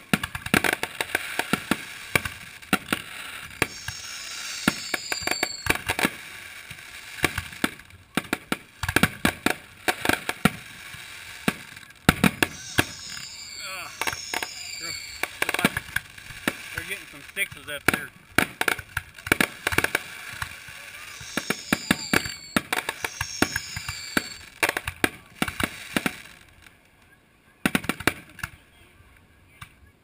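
Fireworks display: a rapid, irregular run of aerial shell bursts, bangs and crackling, with spectators' voices underneath. The bangs thin out near the end, leaving one lone bang.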